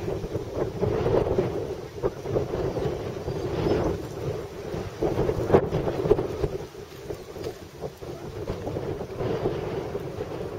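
Wind buffeting the camera microphone outdoors: an uneven, gusting rumble, with one sharp knock about five and a half seconds in.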